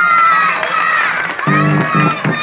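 A group of young children shouting together, many high voices overlapping.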